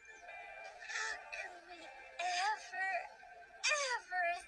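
Cartoon character voices played back at an altered speed, so they sound warped and sing-song, with gliding, wobbling pitch, over soft background music. A short high, voice-like sweep comes near the end.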